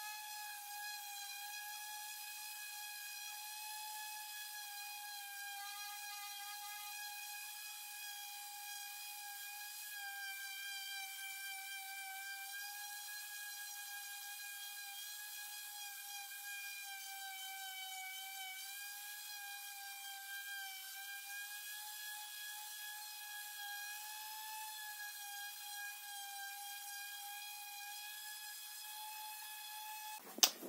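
Hikoki SV13YA random orbital sander running steadily on wooden boards: a high-pitched motor whine whose pitch wavers slightly as the sander is moved and pressed.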